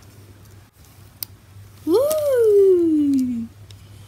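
A single sharp click, then a boy's long drawn-out 'ooh' that rises briefly and slides down in pitch over about a second and a half, as a light-up ball toy comes on.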